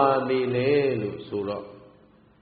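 A Buddhist monk's voice in a drawn-out, sing-song chant, with long, smoothly gliding syllables, fading out shortly before the end.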